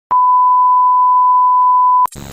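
A loud, steady 1 kHz test tone, the beep that goes with TV colour bars, starting with a click just after the start and cutting off abruptly at the end.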